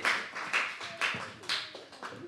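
Hands clapping in a steady rhythm, about two claps a second, growing fainter toward the end.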